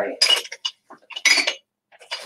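Fragile items clinking and rattling against each other in a box as it is rummaged through, in three short clusters of bright clinks with a brief ringing tone.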